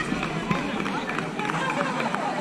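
Several voices of spectators and players calling out and talking over one another around a baseball diamond, with a brief sharp knock about half a second in.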